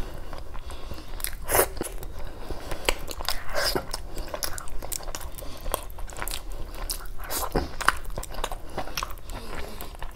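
Close-miked chewing of a mouthful of rice and curry eaten by hand, with irregular wet smacks and clicks.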